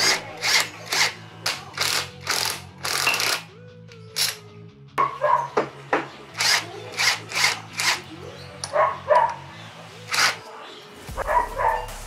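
Cordless impact wrench hammering in many short bursts, undoing the flywheel nut and then the stator screws of a GY6 scooter engine, with a short pause about four seconds in. Background music with a steady bass line runs underneath.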